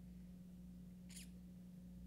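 Near silence: room tone with a steady low hum, broken about a second in by one brief, high, slightly falling squeak.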